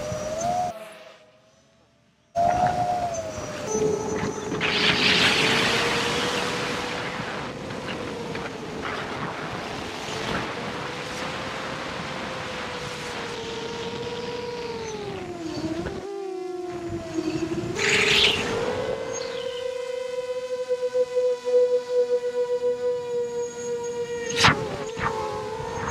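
Quadcopter's electric motors whining in flight, one steady pitch that drifts up and down with the throttle, over rushing wind noise on the onboard camera's microphone. There is a short silence about a second in and a brief break a little before the end.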